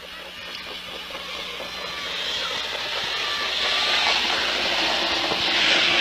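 Racetrack noise at the start of a harness race, an even rushing sound that swells steadily louder as the field leaves the gate.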